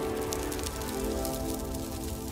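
Logo-intro sound effect: a held musical chord with a dense, irregular crackle of fine clicks over it, as of the logo shattering into fragments.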